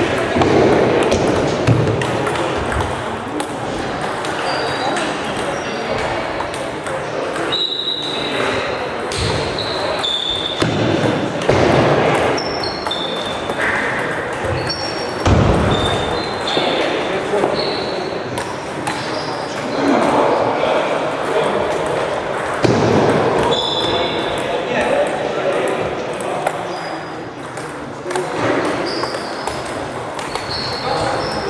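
Table tennis balls clicking off bats and tables, in quick rallies from several matches at once in a sports hall, over a murmur of voices.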